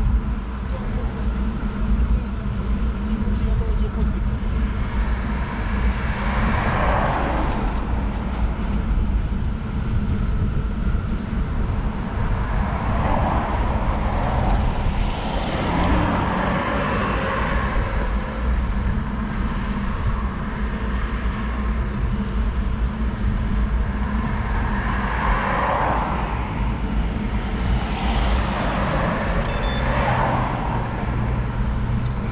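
Steady low wind rumble buffeting the microphone of a bike-mounted camera while cycling, with a few vehicles swelling up and fading away as they pass.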